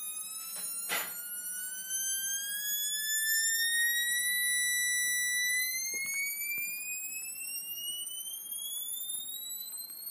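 Piezo driver sounding a tone with several overtones as the signal generator's frequency is swept upward by hand: the pitch climbs, holds steady about halfway through, then climbs again. A sharp click about a second in.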